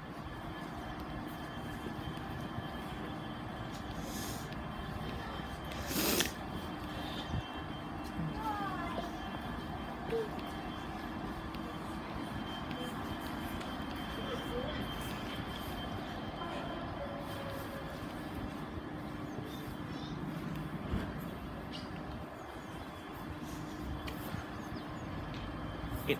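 Steady background hum and noise of a railway station platform, with one sharp click about six seconds in.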